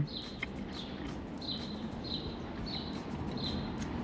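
A bird chirping over and over at an even pace, one short high chirp roughly every half second or so.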